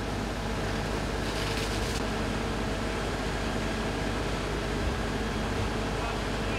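Steady mechanical drone of fire appliance engines and pumps running, with a brief hiss about a second in.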